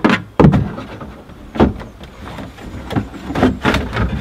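Hard plastic interior trim knocking and scraping as the lower ashtray carrier under a Land Rover Discovery's centre console is worked loose and pulled out. There are several sharp knocks, the loudest near the start, with scraping in between.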